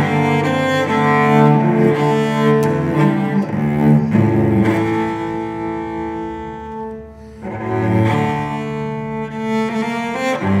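Solo cello played with the bow: sustained notes that overlap and ring on. The playing softens briefly about seven seconds in, then swells again.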